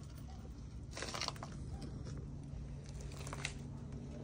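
Footsteps crunching on dry needle litter, twice, about a second in and again around three seconds in, over a low steady hum.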